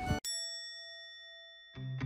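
A single bell-like 'ding' chime sound effect, struck once as the music cuts out, rings with a few clear tones and fades away over about a second and a half. Plucked guitar music starts near the end.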